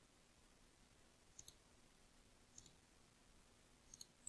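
Faint computer mouse button clicks over near-silent room tone: two quick press-and-release pairs a little over a second apart, and one more click at the end.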